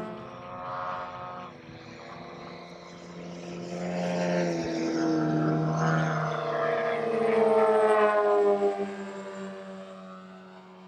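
Radio-controlled model jets with turbine engines flying past, a loud rushing engine sound whose pitch shifts as they pass. It is loudest late on and falls in pitch as a jet goes by, then fades.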